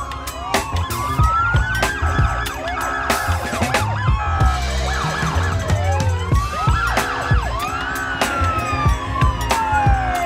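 Police car sirens wailing, several overlapping tones rising and falling slowly. Music with a heavy bass beat plays underneath.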